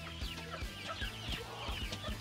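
Day-old Dominant CZ pullet chicks peeping: many short, high, falling cheeps, faint under quiet background music with a steady beat.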